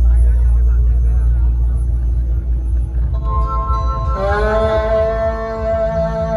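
Loud music from a dhumal band's towering loudspeaker stack. Deep bass fills the first half, then held keyboard-like tones come in about three seconds in, and a sustained melody line swells in about a second later.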